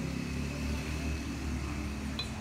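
Steady low rumble of a motor vehicle's engine running nearby.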